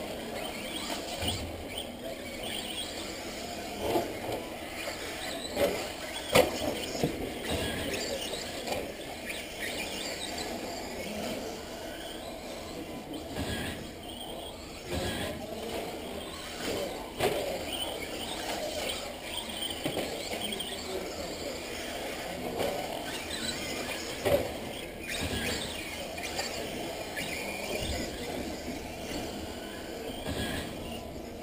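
Radio-controlled off-road race cars running on a clay track, their motors whining up and down as they speed up and slow down. There are sharp knocks now and then, the loudest about six seconds in.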